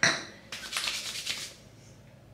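Hands rubbing together briskly, spreading a dab of hair product between the palms: a quick run of dry rustling strokes starting about half a second in and lasting about a second.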